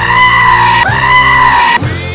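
A goat screaming twice in a row: two loud, human-like yells of about a second each, one straight after the other, over rock band music.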